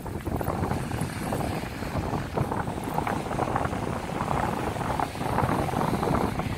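Wind buffeting the microphone: a steady, fairly loud rumble.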